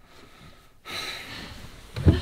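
A man breathing out in one long, noisy breath that starts about a second in.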